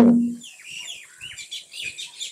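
Small birds chirping: a quick run of short, high chirps that follows the end of a man's spoken word.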